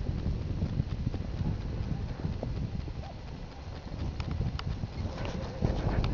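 Footsteps of a walker on a dry grassy meadow track, a steady rhythm of soft steps, with wind rumbling on the microphone. The sharper step clicks come more often in the last couple of seconds.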